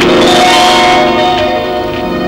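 Background film score: a held chord of ringing, bell-like tones that swells in with a short rising sweep at the start.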